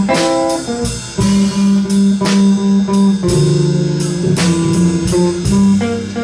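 Live jazz trio playing an instrumental passage: an archtop hollow-body guitar picks a melodic line of held notes over upright double bass and drums, with no vocals.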